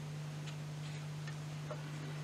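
Faint small ticks, about two to three a second, from a greater white-toothed shrew moving in a live trap, over a steady low hum.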